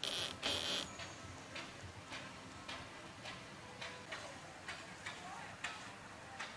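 Footsteps on a wooden plank floor, an even walk of about two steps a second, with a brief scuffing rustle at the start.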